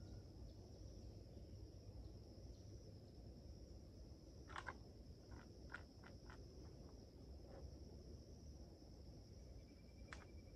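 Near silence outdoors: a faint, steady high drone of insects, with a few faint short ticks about halfway through.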